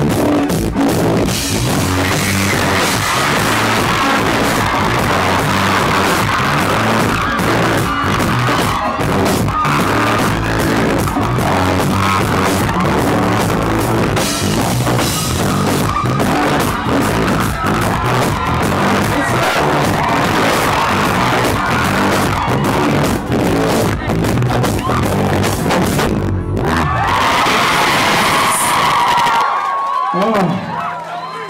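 Live rock band playing loud: electric guitar, bass guitar and drum kit.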